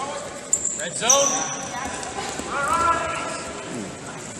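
Voices calling out in a large hall over a wrestling bout, with the wrestlers' feet shuffling and thudding on the mat and two short high squeaks of shoes on the mat about half a second and a second in.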